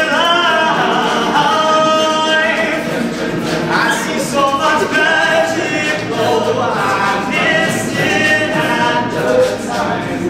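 All-male a cappella group singing in harmony, a lead voice over the ensemble's backing vocals.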